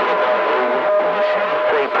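CB radio receiver playing a strong incoming signal: hiss and static with a steady whistle running through it and a faint, garbled voice underneath.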